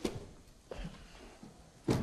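A suitcase being put down and handled, giving a few sharp knocks: one at the start, a softer one a little later, and the loudest near the end.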